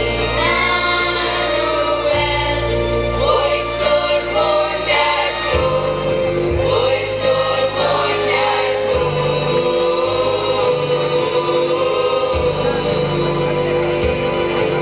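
A school choir singing a Christmas carol in parts, over an instrumental accompaniment whose low bass notes are held and change every few seconds.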